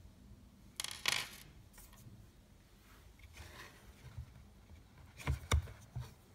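Plastic parts of a Beurer humidifier being handled as it is taken apart: a scraping rattle about a second in, a fainter rustle midway, and two sharp knocks near the end.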